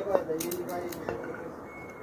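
A few light clicks and handling noises in a small tiled room, with a faint voice murmuring in the first second.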